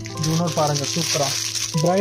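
A person's voice speaking, with a short break about two-thirds of the way in. Underneath are background music with long held tones and a steady high hiss.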